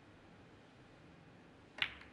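A single sharp click near the end, as the snooker cue tip strikes the cue ball, which is touching the pack of reds and knocks into them. Before it there is only faint arena room tone.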